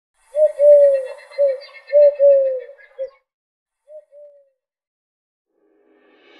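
A bird calling in a quick series of about six short cooing notes, then two fainter notes about a second later.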